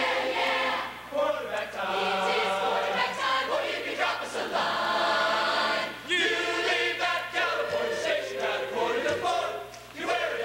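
Large choir of mixed men's and women's voices singing together, in phrases with short breaks between them.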